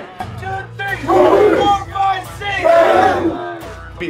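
A group of football players shouting together in two loud bursts, about a second in and again near the three-second mark, over background music with a steady low beat.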